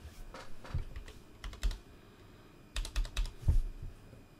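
Typing on a computer keyboard: three short bursts of key clicks with dull knocks, the longest near the end.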